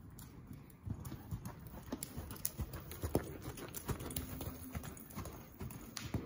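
Horse's hooves thudding on the sand footing of an indoor arena as it walks, the hoofbeats getting louder about a second in as the horse comes close.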